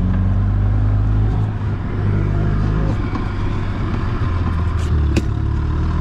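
Gas golf cart's small engine running under load as the cart pushes through fresh snow, its note shifting a few times, with one sharp click about five seconds in.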